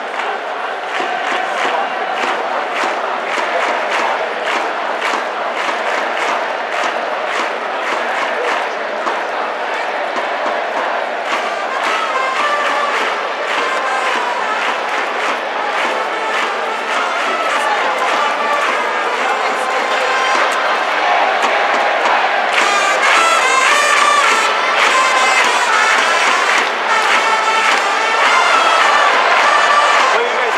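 Japanese pro baseball cheering section: a crowd chanting in unison over trumpets playing a batter's cheer-song melody, with a steady beat underneath. The trumpet melody comes through more clearly in the second half.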